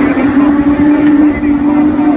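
A pack of autograss race cars' engines revving hard together on the start line and pulling away, a steady high-held engine note over a dense rasp.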